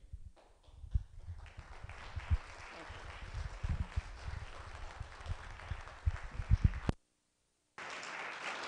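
Microphone handling noise: irregular dull bumps and rustling as the microphone is passed between speakers, over a faint haze of room noise. The loudest bumps come near the end, and the sound cuts out completely for under a second just after.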